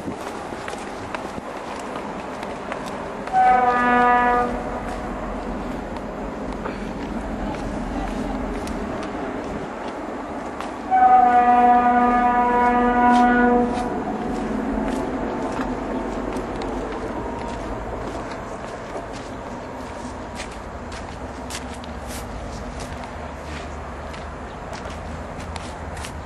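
Two long blasts of a horn held at one steady pitch, the first about a second long and the second about two and a half seconds, over steady outdoor background noise.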